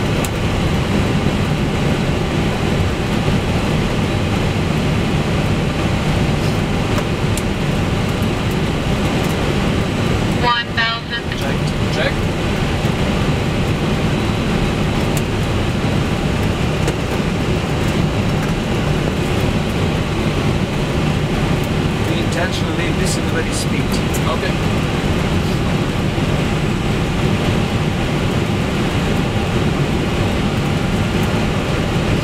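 Steady, loud rush of airflow and engine noise in the flight deck of a Lufthansa Cargo MD-11F freighter on final approach. The noise briefly dips about ten seconds in.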